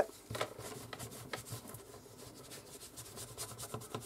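Hands rolling a long strand of polymer clay on a cutting mat: faint soft rubbing, with a scatter of light taps.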